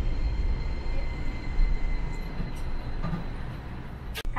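Streetcar running on street track, heard from inside the driver's cab: a steady low rumble from the wheels and running gear with a faint high steady whine above it. It grows gradually quieter toward the end.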